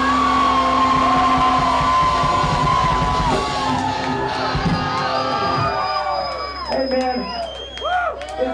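Live heavy metal band finishing a song: distorted guitars, bass and drums under a long held shouted vocal. The band stops about two-thirds of the way through, leaving the crowd yelling and cheering.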